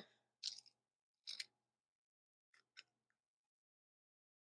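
A few faint, brief sounds of garlic being crushed in a handheld metal garlic press, three short squeezes spread through the first three seconds.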